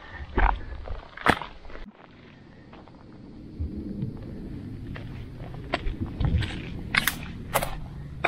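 Footsteps on a rocky, stony trail: a scatter of sharp, irregular steps over a low rumble of wind on the microphone.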